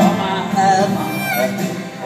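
Live band with a symphony orchestra playing an instrumental break in a slow ballad: orchestral strings under guitar, with no singing.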